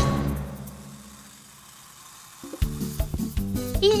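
Cartoon background music fading out, a short lull, then a new cue starting with repeated low notes about two and a half seconds in.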